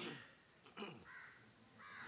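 A bird calling twice in the background, two short calls less than a second apart.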